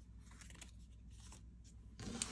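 Faint rustling and light scraping of cardstock greeting cards being handled and swapped on a desk: a few soft paper rustles over a low steady hum.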